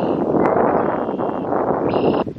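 Wind buffeting the microphone: a loud, steady rush with no break.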